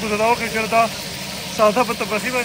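A man speaking over a steady hiss of fish pieces deep-frying in a wide pan of bubbling oil.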